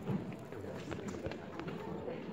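Indistinct voices murmuring in a reverberant school auditorium, with a few light knocks and footsteps about a second in.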